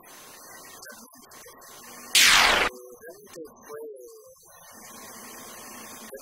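A man talking into a microphone, cut across about two seconds in by a sudden, very loud burst of noise lasting about half a second that drowns out everything else.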